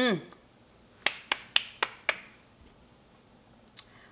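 Five sharp finger snaps in quick succession, about four a second, starting about a second in, and one fainter snap near the end, after a short hummed 'mmm'.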